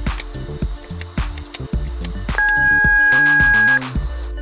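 Background music with a steady beat; about two and a half seconds in, a gate-entry keypad gives one loud, steady electronic beep lasting about a second and a half, which cuts off sharply.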